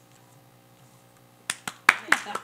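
A quiet pause, then about a second and a half in, a few sharp hand claps as an audience starts to applaud.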